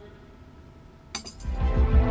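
Dramatic background score: a held chord fades away, then about a second in a bright chiming hit sounds, followed by a low pulsing beat that grows louder.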